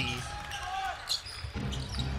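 Live game sound in a basketball gym: crowd chatter and players moving on the hardwood court, with a ball bouncing and a few brief high squeaks.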